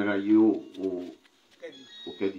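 A man's voice preaching into a microphone in long, drawn-out syllables with short pauses between them.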